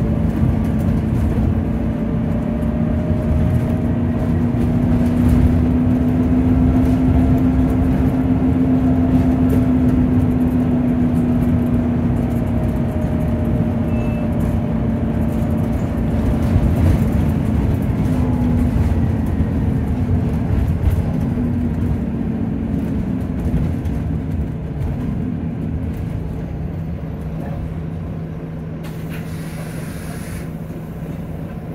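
Double-decker bus heard from inside on the upper deck: the engine and drivetrain run steadily under way with a whine that rises slightly, then falls away as the bus slows. Near the end the sound is quieter and steadier.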